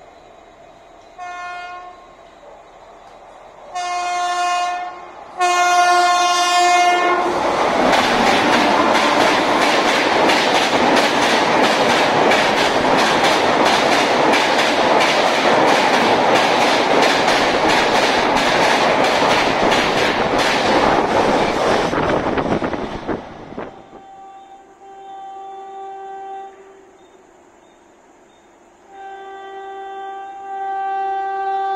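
An Indian Railways electric locomotive horn sounds three times: a short blast, then two longer ones. Then an express of LHB coaches passes at full speed with a loud rush and a rapid clickety-clack of wheels over rail joints, which cuts off suddenly. Near the end, another approaching train sounds two horn blasts.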